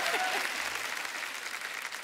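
Studio audience applauding, the clapping dying away over the two seconds.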